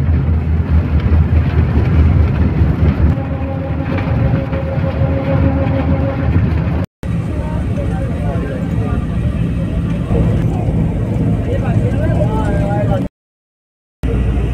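Low road rumble of a moving vehicle heard from inside the cabin, with a steady held tone for about three seconds partway through and voices talking over the rumble in the second half. The sound cuts out abruptly twice.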